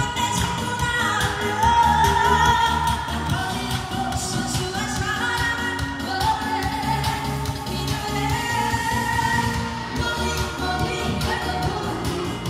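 A woman singing a pop song live into a handheld microphone over a backing track with a steady beat, amplified through PA speakers.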